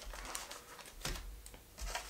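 A few light clicks and taps from a MIDI pad controller and its cardboard box being handled on a tabletop, over a low rumble of bumps against the table.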